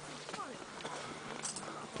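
Faint background chatter of other hikers' voices.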